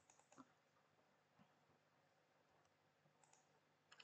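Near silence, broken by a few faint, short clicks of computer keys or a mouse: one just after the start, a pair soon after, one about a second and a half in, and two close together past the three-second mark.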